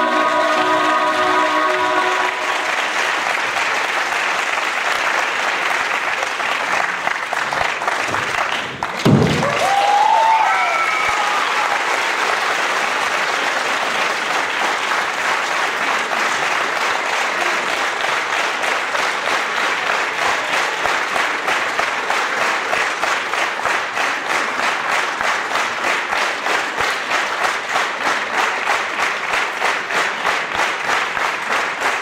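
Theatre audience applauding as the music finishes in the first couple of seconds. There is a thump and a brief shout about nine seconds in, and in the second half the applause falls into rhythmic clapping in unison, about two claps a second.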